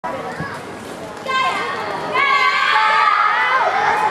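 High-pitched young voices shouting and cheering from the sidelines: a short call about a second in, then louder, longer shouting from about two seconds on.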